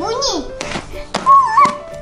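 Children's voices squealing and exclaiming in gliding, wavering pitches over background music, with a few sharp slaps.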